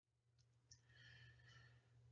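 Near silence with a low steady hum; about three quarters of a second in, a man draws a faint breath lasting about a second.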